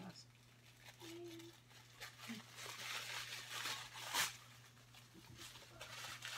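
Paper packing being rustled and torn as a package is unwrapped, faint, with a louder crackle about four seconds in.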